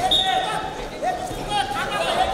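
Loud shouting from coaches and spectators in a large indoor sports hall during a wrestling scramble, several short high calls rising and falling.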